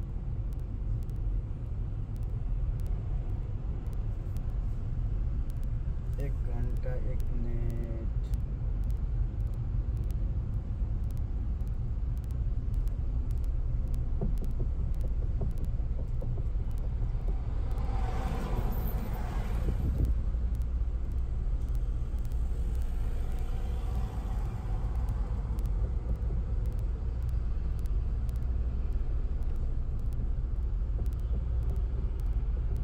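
Road and engine noise inside a moving car's cabin: a steady low rumble. A brief voice comes about six seconds in, and a louder rush of noise swells for about two seconds two-thirds of the way through.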